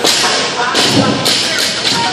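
Loaded barbells hitting a rubber gym floor: a heavy thud right at the start, then a few more about half a second apart, with voices in the background.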